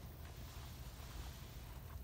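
Quiet room tone: a low steady hum with faint hiss, and no clear clack of wooden blocks.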